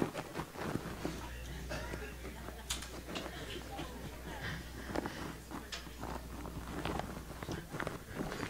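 Indistinct voices with scattered short knocks and clicks, over a low steady hum that starts about a second in and stops near the end.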